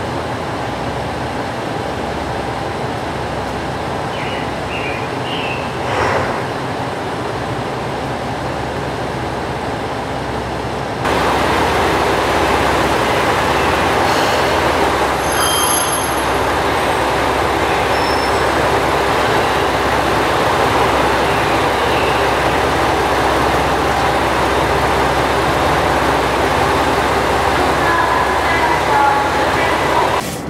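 JR Shikoku 2000 series diesel train standing at a platform with its diesel engines idling steadily. The idling becomes louder and nearer about eleven seconds in.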